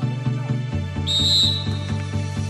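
Referee's whistle, one steady high blast of about half a second about a second in, signalling the kick-off, over pop music with a steady beat.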